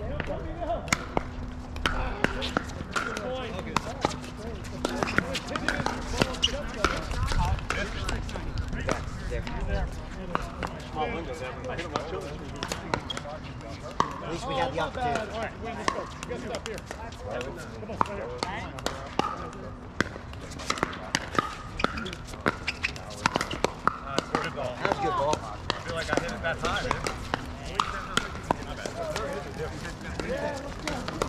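Pickleball paddles striking hard plastic balls: a steady scatter of sharp pops from several courts at once, irregular in timing, over the murmur of players' voices.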